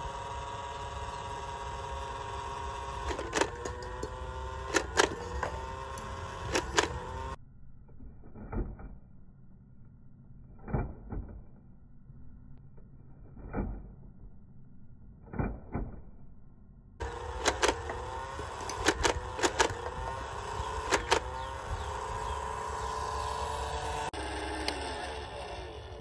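Battery-powered toy soft-dart machine gun's motor whirring in steady runs, with sharp clicks as foam darts fire. In a middle stretch the motor is not heard, and single knocks come a few seconds apart.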